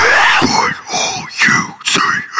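Unaccompanied metalcore lead vocals. A long held note bends in pitch, then breaks into short syllables about half a second in, with a sharp hissed consonant near the end.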